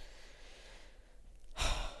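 A man sighs into the microphone: a single audible breath out, about one and a half seconds in, after a low hush.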